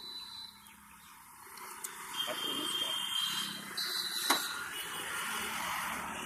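Roadside traffic noise, a hiss that swells about a second and a half in and stays up, with a short faint tone near the middle and a single click just after.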